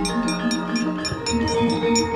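Javanese gamelan ensemble playing a fast, even run of struck metallophone notes, about five strokes a second, over held ringing tones.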